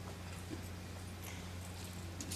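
Quiet room tone with a steady low hum and a few faint, scattered clicks and taps.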